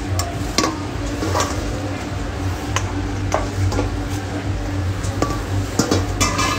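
Chicken wings being tossed in sauce in a stainless steel mixing bowl: wet sloshing, with scattered clinks and knocks of the metal bowl, over a steady low hum.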